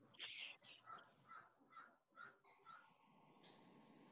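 Near silence, broken by a faint run of short, evenly spaced animal calls, about two a second, that stop about three seconds in.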